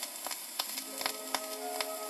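Surface noise of an RCA Victor 78 rpm shellac record playing between tracks: a steady hiss with frequent sharp clicks and crackle. Quiet held musical notes come in about half a second in.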